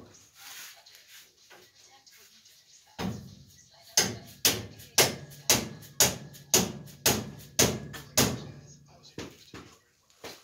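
Hammer blows on steel, about nine strikes at roughly two a second with a metallic ring, then a few lighter taps near the end: driving at the bolts of a leaf-spring shackle mount to free it from the chassis.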